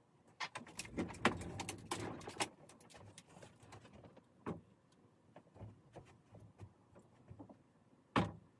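Large hinged wooden display cabinet being opened, its doors swung wide: a quick run of clicks and wooden knocks in the first couple of seconds, then scattered fainter knocks.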